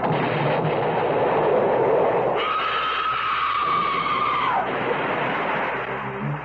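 Radio-drama sound effect of a car-bomb explosion: a sudden dense burst of noise lasting about two seconds, then a high held tone that slides down near the end.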